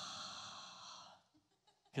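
A man's long breathy exhale, a sigh into a handheld microphone, fading away about a second in.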